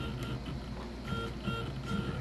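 NEMA 17 stepper motor, driven open loop by an Arduino, whining in short pitched bursts several times a second as it steps its shaft to follow a turned potentiometer.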